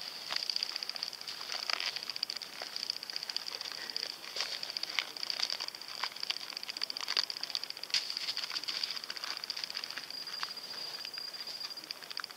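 Insects trilling steadily at a high pitch in a fast, even pulse, with scattered light clicks over it.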